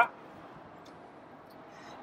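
Quiet, steady outdoor background noise with a couple of faint, light ticks about a second in.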